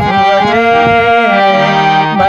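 Harmonium playing a melody of held reed notes with some ornamented turns, over hand-drum strokes that thin out about halfway through.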